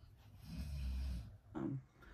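A person's low breathy sound lasting about a second, then a short hum near the end.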